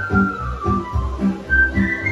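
Romanian folk dance music: a high melody line that slides between notes over a steady bass beat of about two beats a second.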